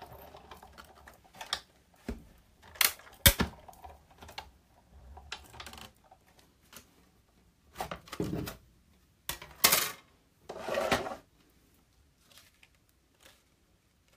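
Big Shot die-cutting machine worked by hand: scattered sharp plastic clacks and knocks as the cutting plates and magnetic platform carrying a Thinlits die are cranked through and handled, with a few longer rasping sounds between about eight and eleven seconds in.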